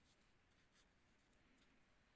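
Near silence, with a few faint strokes of a paintbrush on cold-pressed watercolour paper.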